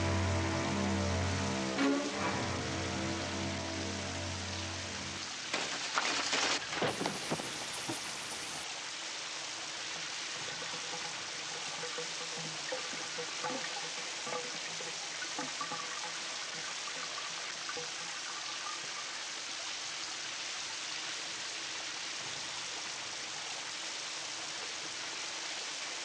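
A shower running: water spraying steadily and falling into the tub. Low sustained music fades out about five seconds in, and a few sharp knocks come soon after.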